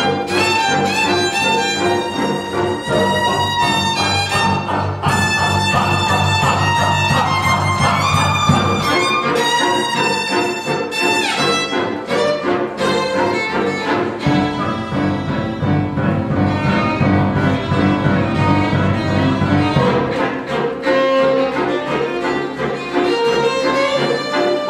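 A large ensemble playing a conducted free improvisation, bowed strings to the fore: many instruments hold layered sustained notes, with upward slides about halfway through. The deep bass notes drop away in the middle and again near the end.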